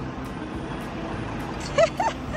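A semi truck's diesel engine running low and steady as the tractor-trailer moves slowly, heard from outside the cab. A short voice call comes near the end.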